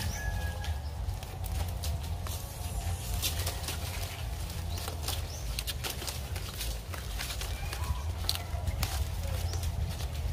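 Green coconut palm leaflets rustling and crackling as they are handled and woven by hand, with many small, irregular sharp clicks, over a steady low rumble.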